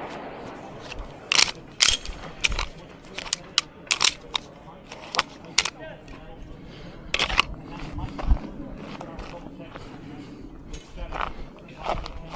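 Pistol gunfire from another stage at a USPSA match, a string of sharp, irregular shots that are clustered in the first half and spaced out later, fainter than the voices around them.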